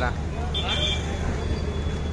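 Street traffic with a steady low engine hum and motor scooters passing close by. A short high beep sounds about half a second in.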